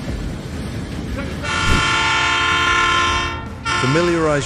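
Rumbling noise, then a train horn sounding one long steady blast of about two seconds, starting about a second and a half in and cutting off sharply.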